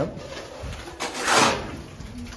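Wet cement mortar being scraped and spread by hand around a ceramic squat toilet pan: one rough swish about a second in.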